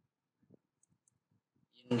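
Faint computer keyboard key presses, a few isolated clicks, then a voice starts speaking near the end.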